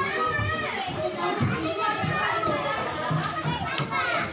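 Children's voices and play chatter in an indoor play area, several children talking and calling over one another, with music in the background.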